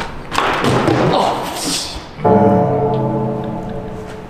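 Thuds and footfalls as a person runs up and lands on a tall wooden vaulting box. About two seconds in, a sustained musical note, an edited-in sound effect, starts abruptly and slowly fades.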